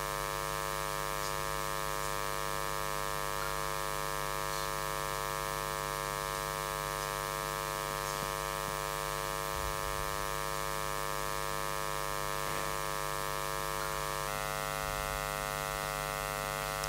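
Steady electrical mains hum with many overtones, unchanging in level throughout.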